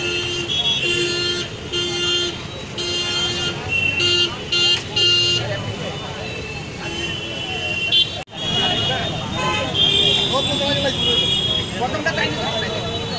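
A vehicle horn sounding in short repeated toots, several in the first five seconds and more after a break, over people's voices on the street.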